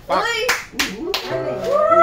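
A short vocal sound, then three sharp claps in quick succession, followed by a long held note that carries on past the end.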